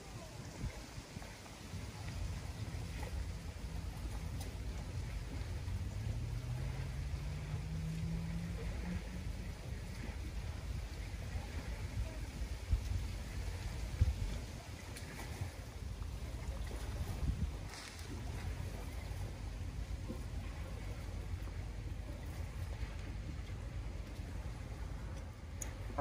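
Low, steady outdoor rumble beside open water, with a motorboat engine whose pitch rises about five to nine seconds in. A few faint knocks.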